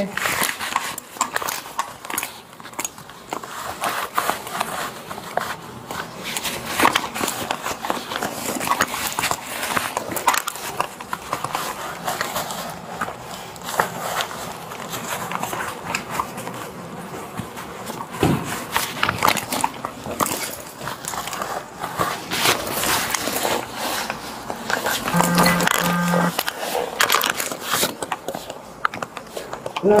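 Clothing rustling and scraping against a body-worn camera's microphone during a pat-down search, a dense run of irregular rubs and knocks. Two short low beeps come near the end.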